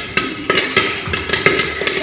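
Popcorn popping in a lidded pot on a gas stove: irregular sharp pops, several a second, against the lid and pot.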